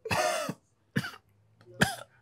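A man coughing three times: a longer cough at the start, then two short ones about a second in and near the end.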